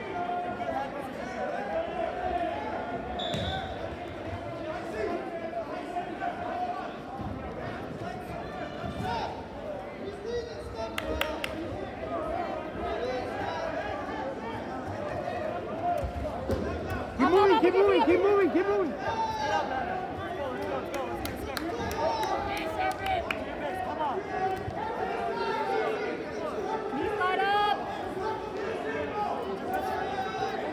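Many voices talking and shouting in a large echoing gymnasium, with scattered thuds. A loud shout comes about seventeen seconds in.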